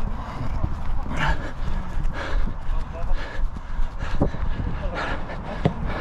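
A runner breathing hard close to the microphone, one heavy breath about every second, over a steady low rumble of wind on the microphone.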